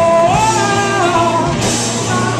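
Live rock band playing: a man singing long held notes that slide up and down in pitch, over guitars and a drum kit.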